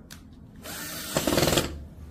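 Cordless drill running against a wooden board for about a second, louder in its second half before it stops.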